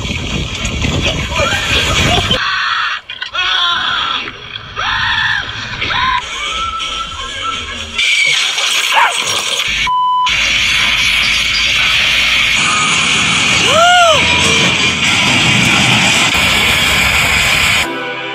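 Soundtrack of a fail-video compilation: music under the clips' own voices and sounds, changing abruptly as one clip cuts to the next, with a short beep about ten seconds in.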